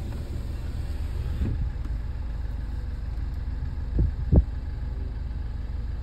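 Car engine idling, heard from inside the cabin as a steady low rumble. Two dull thumps come close together about four seconds in.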